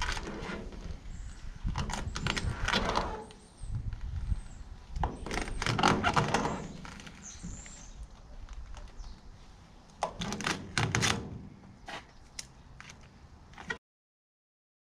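Adhesive vinyl wrap being peeled by hand off an aluminum canopy panel, in three crackly tearing pulls of a second or two each. The sound cuts off suddenly near the end.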